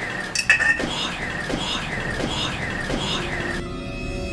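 A short, noisy recorded fragment played back in a loop, repeating about five times at an even pace: an EVP playback presented as an unexplained man's voice saying "water". Eerie music with steady held tones comes in near the end.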